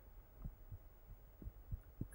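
Pen writing on paper, heard only as four soft low taps over a faint steady low hum; otherwise near silence.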